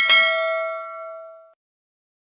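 A single bright bell ding, the notification-bell sound effect of a subscribe animation. It is struck once and rings out, fading away over about a second and a half.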